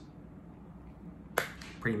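A quiet stretch, then a single sharp click about one and a half seconds in, followed by a man's voice starting to speak near the end.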